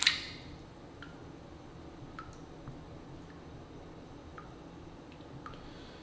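A handful of small shad hitting the water of a gar tank with a brief splash, then a few faint drips and plops at the surface over a low steady background.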